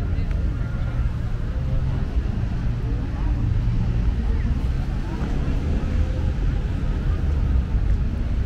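Outdoor street-market ambience: a steady low rumble of nearby traffic with people talking in the background.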